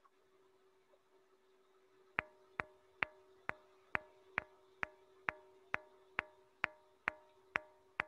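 Field recording of a Nubian rock gong, a ringing boulder lithophone, struck repeatedly on a single cup mark: about thirteen even taps a little over two a second, starting about two seconds in, each with a brief ring. It sounds just like somebody tapping a rock.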